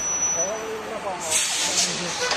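Bus air brakes letting off a hiss that lasts about a second in the second half, over faint voices and street traffic.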